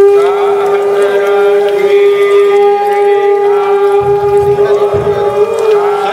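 A conch shell (shankh) blown in one long, steady, horn-like note that starts suddenly and holds throughout, with a second higher note joining partway through and voices chanting over it.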